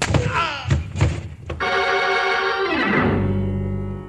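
A radio-drama fight ends in a man's cry and a few sharp thuds of blows. An organ music sting follows about a second and a half in: a held chord that slides down into a low sustained chord, fading near the end.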